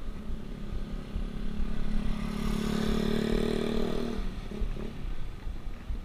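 A motor vehicle passes close by: its engine note swells over about two seconds, peaks, then fades. A steady low rumble of wind and road noise runs underneath.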